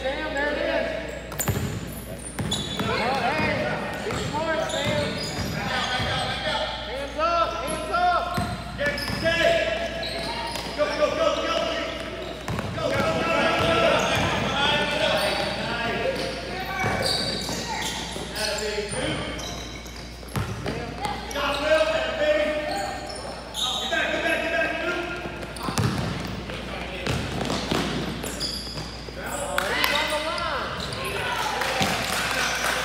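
Indoor basketball game sounds in an echoing gym: indistinct voices of players and spectators calling out, with a basketball bouncing on the hardwood court now and then.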